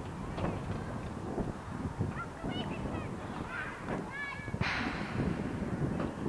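Wind buffeting the microphone, with a few short high-pitched animal calls in the middle and a rush of gusty noise lasting about a second near the end.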